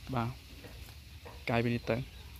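Two short, low vocal sounds, one right at the start and a paired one about a second and a half in, over a faint steady hiss.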